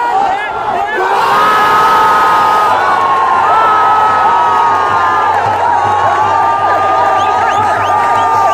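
Football stadium crowd cheering and shouting, growing louder about a second in, with long held notes sounding over the roar.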